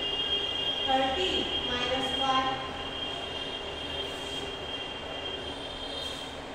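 A steady high-pitched whine, with faint voices heard briefly about a second in.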